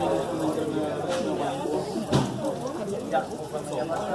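Overlapping background chatter of several people talking at once, with no single clear voice, and one short knock about halfway through.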